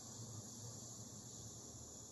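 Faint room tone: a steady high hiss with a low hum underneath.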